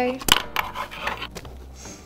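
A single sharp knock about a third of a second in, followed by low voices and small clicks and rustles.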